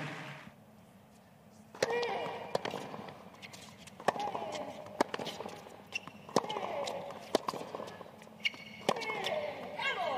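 Tennis rally: a brief hush, then racket strikes on the ball about every one to two seconds, starting about two seconds in. Several strikes are followed by a player's grunt.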